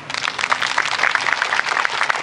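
Audience applauding, a dense patter of hand claps that starts suddenly and reaches full loudness within about half a second.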